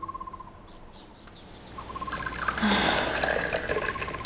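Outdoor village ambience: a bird calling in short trills, repeated a few times. A louder noise made of many small clicks builds over the second half.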